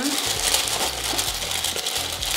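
Paper and cardboard packaging rustling and crinkling as a cosmetics subscription box is unpacked.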